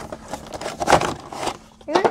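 Cardboard pin box and its plastic packaging being handled and opened, in scattered rustles with one louder, sharper rustle about a second in.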